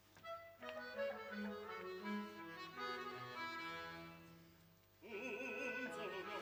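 Small chamber ensemble with bowed strings playing a short instrumental phrase that fades away about four and a half seconds in. Near the end an operatic voice with strong vibrato starts singing over it.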